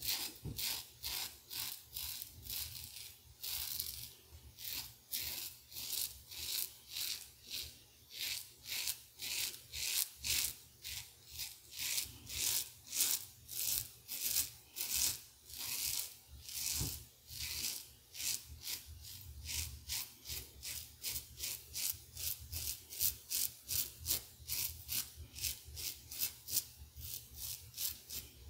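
Merkur 34C double-edge safety razor with a Voskhod blade cutting two days' stubble on the neck through lather: a quick, steady run of short scraping strokes, two or three a second.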